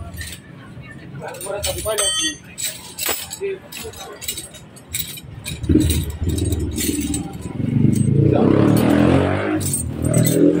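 Light clicks and rattles of wires and a plastic relay connector being handled, then from about six seconds in a motor vehicle engine running, growing louder and loudest near the end.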